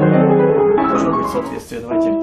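Upright piano played with both hands: held chords under a moving line of notes. The playing breaks off briefly near the end with a short noisy gap, then new notes begin.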